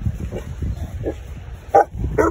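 Boerboel barking in play: a few short barks, the loudest near the end.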